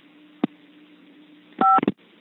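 A single short touch-tone beep over a telephone line near the end, the key 5 pressed to accept a collect call. There is a sharp click about half a second in.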